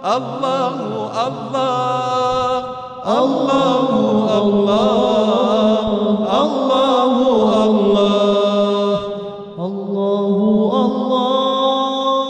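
A man singing an Arabic nasheed unaccompanied, in long held notes with wavering melismatic ornaments. There are two short pauses, about three seconds in and near nine seconds.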